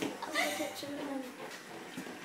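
Quiet talking, quieter than ordinary conversation, with no other sound standing out.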